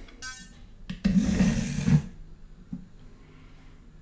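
A short electronic beep, then about a second of rumbling, scraping handling noise as a toy train is set on a wooden track.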